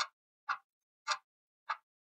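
Clock ticking: four sharp, evenly spaced ticks a little more than half a second apart.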